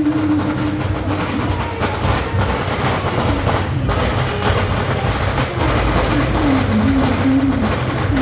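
Beiguan procession music: a wavering suona-like reed melody over drums and gongs, with the noise of a street crowd.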